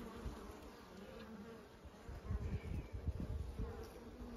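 Honey bees buzzing as a faint, steady hum from an open Langstroth hive full of bees, with a low uneven rumble underneath. The colony is stirred up: the beekeeper believes something tried to break into the hive.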